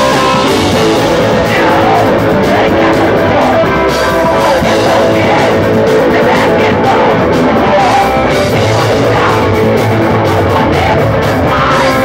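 Punk rock band playing loud live: electric guitar and drum kit.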